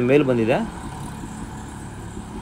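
A man's voice for about half a second, then a steady background hum for the rest.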